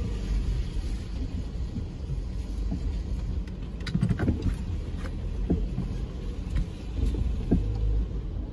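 Low rumble of a Subaru Forester creeping forward at low speed, heard from inside the cabin, with a few short knocks along the way.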